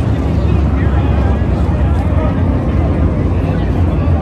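A pack of NASCAR stock cars racing around the oval, their V8 engines a loud, steady rumble. Crowd voices sound faintly underneath.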